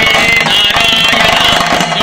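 Chenda drums played fast with sticks by a drum ensemble, a dense rapid rolling of strokes, with a high wavering melody line above the drumming.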